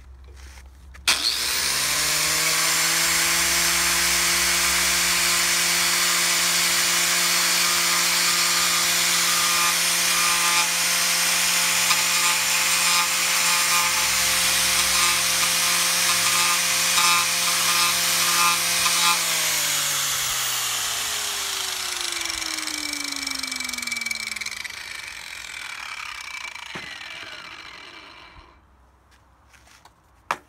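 Electric angle grinder fitted with a King Arthur Lancelot chainsaw-tooth carving disc starts up about a second in and runs at a steady pitch while the disc cuts lightly into the edge of a wooden leaf. About two-thirds of the way through it is switched off and winds down, its whine falling in pitch until it stops near the end.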